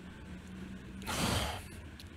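A man's short audible breath out, a sigh, into a handheld microphone about a second in, over a faint steady hum.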